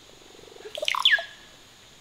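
A single bird call: a short, low rattling note, then a few quick liquid notes and a high whistle that falls and then holds briefly, all within about a second.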